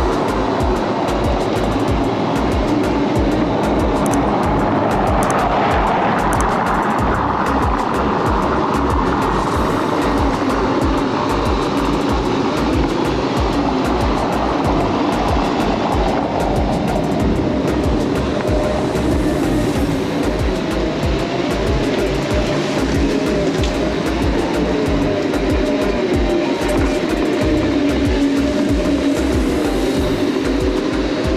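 Wind buffeting the microphone of a camera riding along on a Segway, with background music over it.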